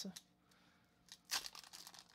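Foil hockey card pack being torn open by hand: a short rip about one and a half seconds in, followed by light crinkling of the wrapper.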